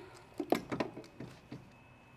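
A combination lock being set to a code and tried: a quick run of small clicks and knocks in the first half, then quiet.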